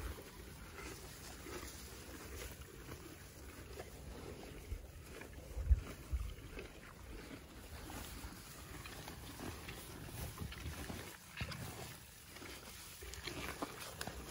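Ponies eating close to the microphone: chewing and pulling at hay and fresh greens, with rustling of leaves and stems over a low wind rumble. There is a short low bump about six seconds in.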